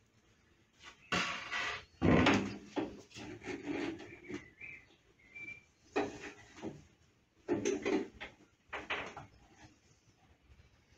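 Clunks, knocks and metallic rattles from a 12-inch combination jointer/planer as its jointer tables are unlatched and swung up to change it over to planer mode. It comes as several separate handling bursts with short gaps between them.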